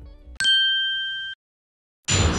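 A single bright, bell-like ding sound effect about half a second in, ringing for about a second and then cut off abruptly, over the tail of faint background music.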